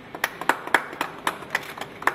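A small group of people clapping by hand: scattered, distinct claps, several a second, starting a moment in.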